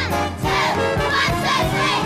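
A chorus of children's voices singing together over a swing band, coming in about half a second in.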